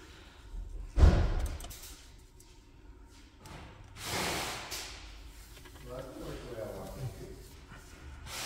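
Handling noise from fitting plastic trim around a Tesla Model 3's rear-view mirror camera housing: one sharp thump about a second in, then a short rushing noise about four seconds in.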